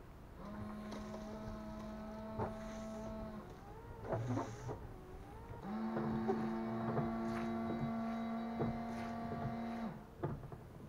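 Car's windscreen washer pump and wiper motor running, a steady electric whine, twice: about three seconds, then after a pause about four seconds, each cutting in and out abruptly.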